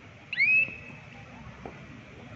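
A single loud, high whistle that swoops up in pitch and then holds steady for about half a second, a little after the start, over the steady murmur of a crowd in the hall.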